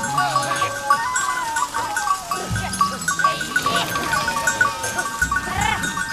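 A herd of sheep and goats bleating several times, each call wavering, over a steady patter of quick, high chirping pips.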